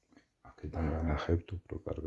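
A man speaking in a low voice, starting about half a second in after a near-silent pause.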